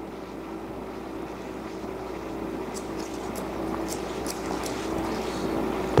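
Barber's shears snipping hair, a run of about seven short, crisp snips in the middle, over a steady room hum.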